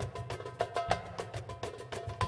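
Goblet drum (darbuka) played by hand in a fast solo run: quick, sharp, ringing rim strokes, several a second, mixed with deeper bass strokes.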